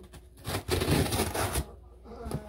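Packing tape on a cardboard shipping box being slit open, a rasping scrape lasting about a second that starts about half a second in.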